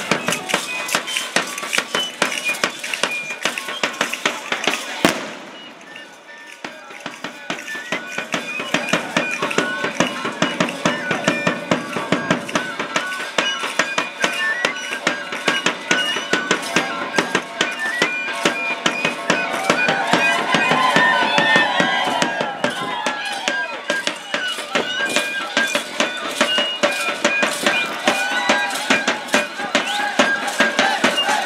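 Outdoor procession music: a fast, steady rattling beat with a thin high melody over it, mixed with crowd voices. A single sharp crack about five seconds in, after which it briefly goes quieter.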